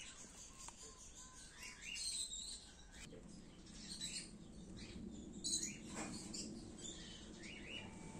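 Small birds chirping, short high chirps repeated every second or so, with a faint low hum underneath that grows from about three seconds in.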